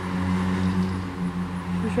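A steady, low drone of a running engine or motor, holding one pitch throughout.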